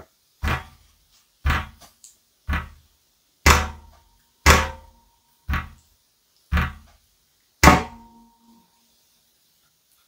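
A fist pounding down on a table eight times, about once a second. Each blow is a heavy thump, and a couple of them leave a brief ringing.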